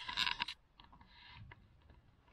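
A brief scraping rustle in the first half second, followed by a few faint clicks and a soft rustle.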